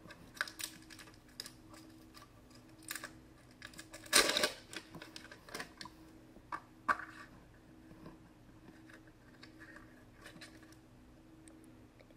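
Hard plastic blind-pack capsule being handled and pulled open by hand: scattered small clicks and plastic crackles, with one louder crinkling rustle about four seconds in.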